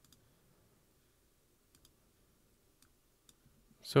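A few faint, sparse computer mouse clicks against low room noise.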